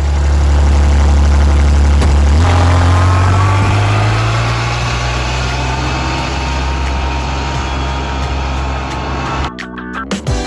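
Utility vehicle's engine running with a loud low drone that steps up in pitch about two and a half seconds in as the vehicle pulls away, then eases off gradually as it drives off, and cuts off suddenly near the end.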